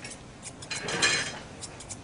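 Grooming scissors and a steel comb working a Newfoundland's thick coat: light metallic snips and clicks, with a longer rasping stroke about a second in.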